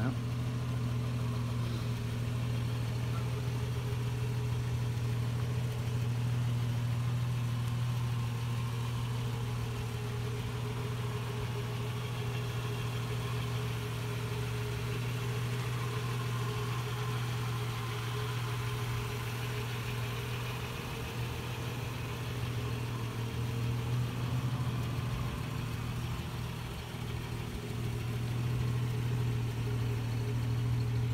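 A 1966 Plymouth Valiant Signet's engine idling steadily, a low even hum.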